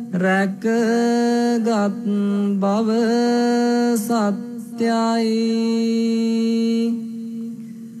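A single voice chanting a Buddhist chant in long, steady held notes, with short breaks between phrases. The longest note is held for about two seconds before the voice fades out near the end.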